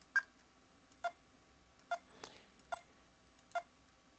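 Faint computer mouse clicks, six of them at roughly once-a-second intervals, each click placing the next point while tracing a shape's outline.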